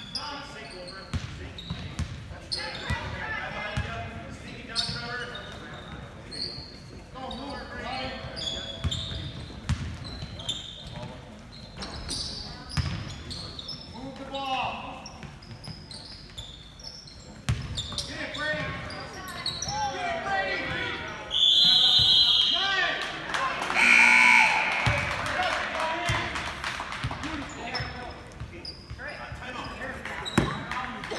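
A basketball bouncing on a hardwood gym floor during play, with many players and spectators calling out and talking in the hall. About three-quarters of the way through, a loud, shrill high tone lasts over a second, then a loud shout follows.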